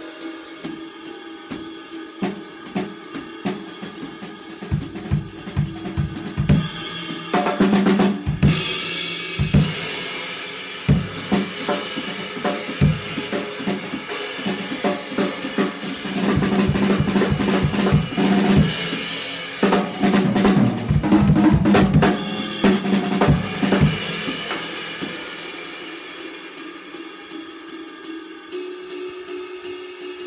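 Drummer playing a GMS drum kit with Paiste cymbals: a lighter groove on cymbals and hi-hat, building from about seven seconds in to loud playing with bass drum, snare and tom fills, then easing back to softer cymbal-led playing over the last several seconds.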